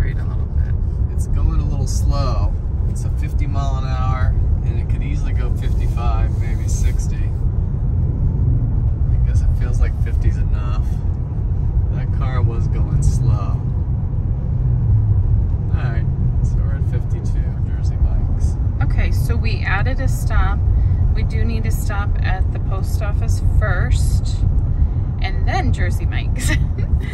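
Steady low road and tyre rumble inside a Tesla's cabin cruising at about 55 mph, with no engine note. Stretches of quiet, indistinct talk come and go over it.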